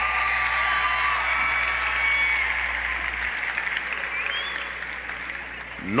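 Large audience applauding and cheering, with a few long shouts over the clapping; it eases slightly toward the end.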